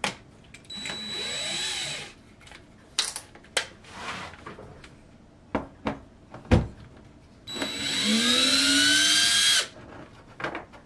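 Cordless drill-driver with a No. 1 screwdriver bit running to back out a small screw: a short run about a second in, then a few clicks and one sharp knock, then a longer run near the end whose whine rises in pitch as the motor spins up.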